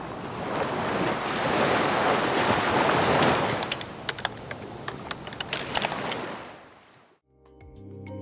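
Ocean surf washing, swelling and then easing off. A quick run of keyboard-typing clicks sounds over it in the middle. The surf fades out near the end and light music with clear pitched notes begins.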